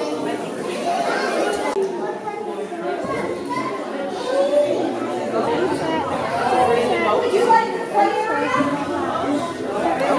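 A group of young children chattering and calling out over one another, with no one voice standing out.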